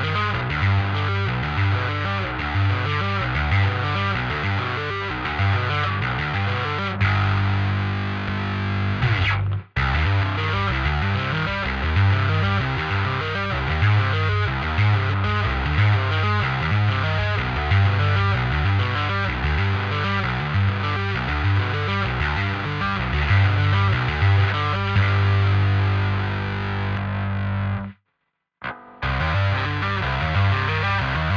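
Dingwall NG2 five-string electric bass played fingerstyle in a full, distorted metal mix, its low notes pulsing in a steady rhythm. The music drops out for an instant just before ten seconds in, then stops for about a second near the end before starting again.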